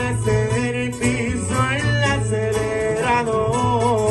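A live regional Mexican corrido band playing: plucked and strummed guitars over a steady bass line, with a gliding, bending melody line above.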